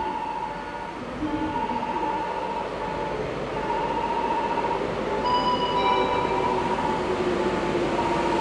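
JR 721 series electric commuter train drawing toward the station, its running sound growing louder, with a steady motor tone coming up near the end. A warbling electronic tone sounds on and off over it.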